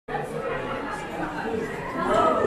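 Indistinct chatter of many people talking at once, a steady crowd murmur with no single voice standing out.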